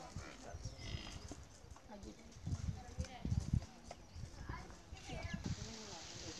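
Faint distant voices, with a few soft low thumps in the middle.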